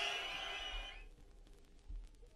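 A fading echo tail of the sound system dies away over about the first second, leaving a near-silent break in the music.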